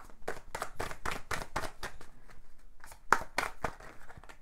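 A tarot deck being shuffled by hand: a quick run of papery card slaps and flicks, about seven a second, with one louder slap a little after three seconds in.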